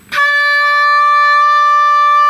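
Oboe playing one long, steady D (D5), fingered with the half hole, beginning a moment in and held at an even pitch and volume.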